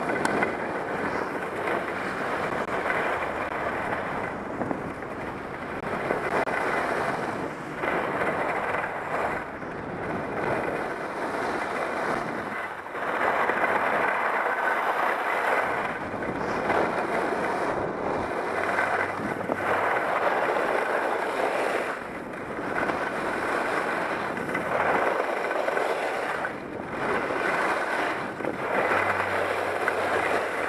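Skis running over groomed corduroy snow, a steady scraping hiss that swells and eases every few seconds with the turns, mixed with wind on the microphone.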